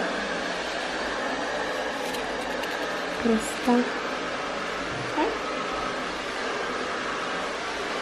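Steady fan-like hiss of moving air, with a few brief voice sounds near the middle.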